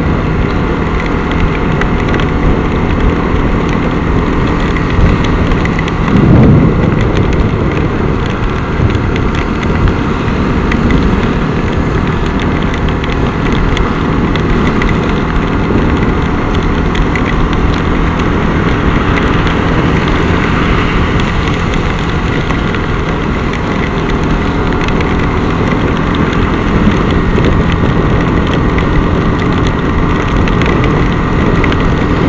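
Bajaj Pulsar NS200 motorcycle ridden at road speed in heavy rain: a steady, loud mix of wind rush, engine and tyres hissing through water on a wet road. There is a brief louder swell about six seconds in.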